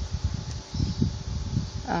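Handling noise: a run of dull, low bumps and rubbing as a cardboard tag is set down flat on a table.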